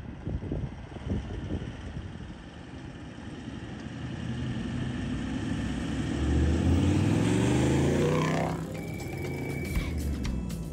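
Toyota Land Cruiser 4x4 driving past close by: its engine grows louder and is loudest about seven to eight seconds in, then drops in pitch as it goes by. A brief steady high tone follows near the end.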